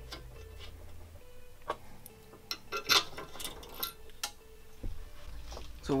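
Light metallic clicks and taps, a few scattered and irregular, as bolts are fitted by hand through a steel caliper bracket into the rear hub upright.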